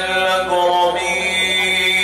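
A man chanting in Arabic in the melodic qirat style, drawing out a long held note that wavers and then steadies.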